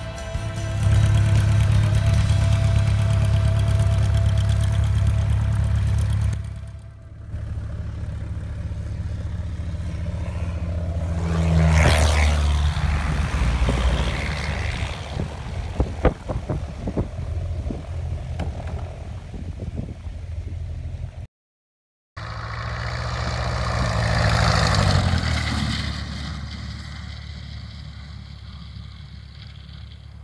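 Light aircraft propeller engines heard from beside a grass airstrip, in several short clips: a loud, steady engine hum at first, then planes passing close by, each swelling to a peak and falling away. Near the start, musical tones fade out under the engine, and about two-thirds of the way through, the sound cuts out briefly.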